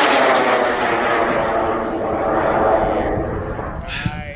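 A J210 high-power rocket motor burning as a Katana model rocket climbs after lift-off: a loud, steady rushing roar whose tone slides lower as the rocket climbs away, fading near the end.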